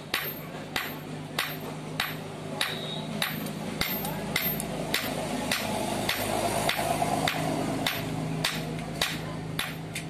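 Hand hammer striking a red-hot steel knife blade on an iron anvil as the blade is forged into shape, a steady rhythm of sharp ringing blows about every 0.6 seconds over a low hum.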